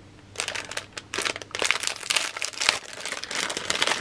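Clear plastic cellophane bag crinkling and crackling irregularly as hands work it open, starting about a third of a second in.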